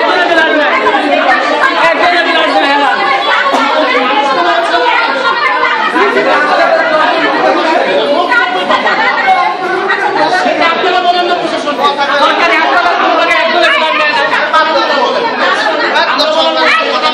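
A crowd of many people all talking at once: loud, continuous overlapping chatter with no single voice standing out.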